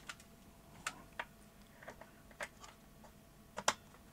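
Light clicks and taps of hands handling an opened plastic radio and its leads: about eight short, sharp clicks spread irregularly, the loudest a quick pair near the end.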